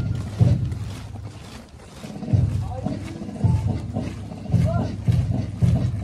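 Indistinct voices over irregular low rumbling outdoor noise, with no clear words.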